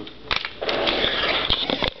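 Rustling of packing material as trading cards are handled, with a few light clicks of hard plastic card holders knocking together.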